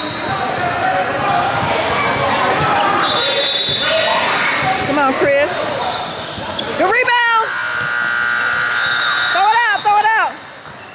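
Basketball game on an indoor court: sneakers squeaking sharply several times, rising and falling in pitch, about five seconds in, at seven seconds and near the end, over the thud of the ball and the noise of the gym.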